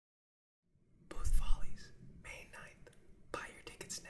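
A person whispering, in three short breathy phrases, starting about a second in; the first phrase has a low thump under it.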